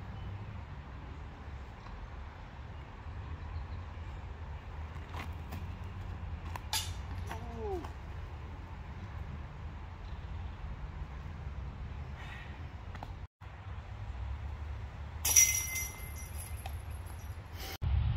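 Low, steady outdoor rumble with a few faint clicks, then, near the end, a sudden metallic clank followed by a ringing jingle that lasts about two seconds: a golf disc striking a metal disc golf basket.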